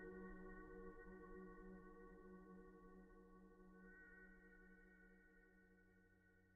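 Faint ambient music: a drone of several held tones, fading out steadily.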